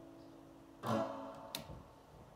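Acoustic guitar at the end of a song: a chord rings out and fades, one more strum comes about a second in and dies away, and a short sharp click follows soon after.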